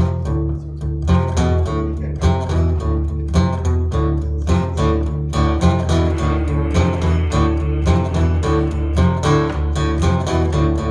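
Acoustic guitar strummed in a steady rhythm: an instrumental song intro with no singing yet.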